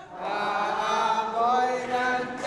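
A group of voices chanting together in long held notes, starting just after a brief lull.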